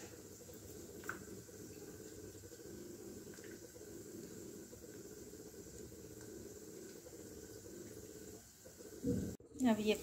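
Faint steady hiss of kitchen background noise, with a light click about a second in and a brief handling sound just before the end.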